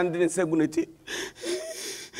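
A man's strained, drawn-out vocal cry, then about a second of loud breathy gasping, part of a dramatized lament.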